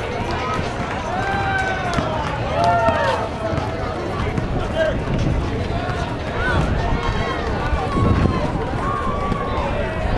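Distant shouts and calls from players and spectators at an outdoor basketball game, over a steady outdoor crowd hubbub, with a few sharp knocks.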